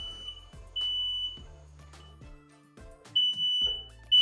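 Smoke alarm beeping: a high-pitched steady tone in short beeps, three in all, with a longer pause in the middle. It has been set off by smoke from a freshly lit smudge stick.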